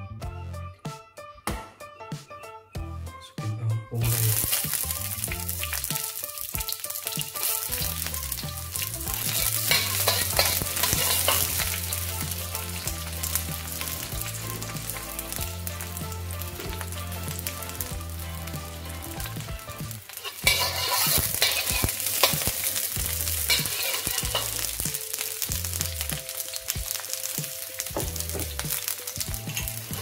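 Onion wedges sizzling in hot oil in a carbon steel wok, the sizzle starting suddenly about four seconds in as they hit the oil, with a metal wok spatula stirring and scraping. The sizzle gets louder again about twenty seconds in.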